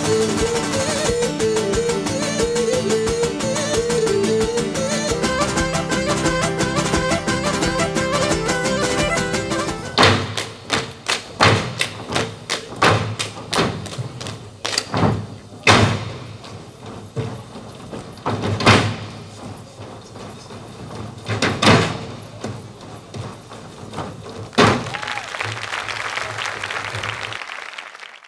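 Live Cretan folk dance music on lutes, which stops about ten seconds in. It gives way to a series of separate thumps: a quick cluster first, then single louder ones about three seconds apart.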